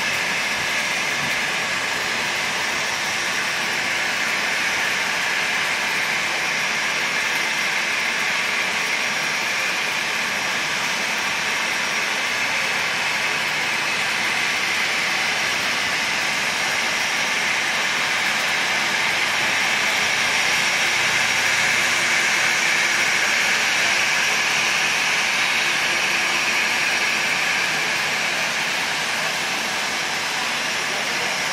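Jet engines of a Boeing 787 airliner at taxi power: a steady whine with a hiss, swelling slightly about two-thirds of the way through as the plane passes.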